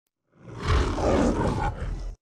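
The Metro-Goldwyn-Mayer logo's lion roar: one long, rough roar that builds up over the first second and holds to the end.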